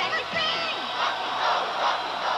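A voice sings or speaks the last words of a cereal commercial jingle, then a crowd of voices shouts and cheers together for the rest.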